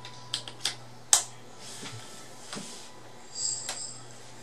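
Light clicks and knocks of a bass guitar being handled and turned over, the sharpest about a second in, with a brief high ringing near the end, over a steady low hum.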